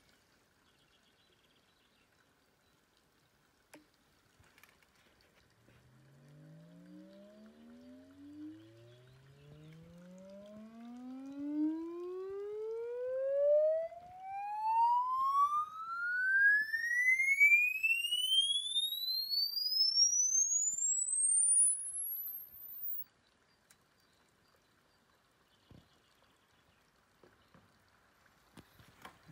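A logarithmic sine sweep played by a smartphone's speaker through a handmade wooden back-loaded horn station. It glides steadily up from a low hum to a very high whistle over about fifteen seconds, with overtones above it in the low part, and cuts off suddenly. This is the test signal for measuring the station's sound level and frequency response.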